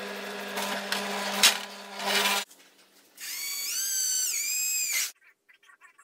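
Bench drill press running and boring into a steel plate, a steady motor hum under the cutting noise for about two and a half seconds. After a short gap, a different high machine whine steps up and down in pitch for about two seconds, then it goes quiet.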